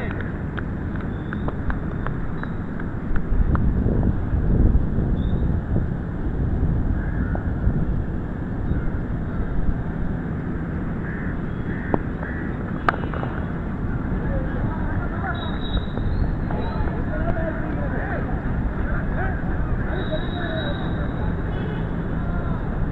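Wind buffeting the microphone with a low rumble that swells in gusts, under faint distant voices of players calling across the field. A single sharp click about halfway through.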